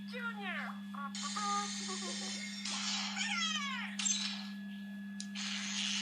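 Cartoon soundtrack played through a tablet's speaker: high-pitched, squeaky voice sounds sweeping up and down and music, over a steady low hum.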